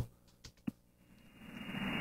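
Near silence with two short clicks, then hiss from a CB radio receiver on single sideband, cut off above about 3 kHz, fading up over the second half as the distant station comes back on the channel.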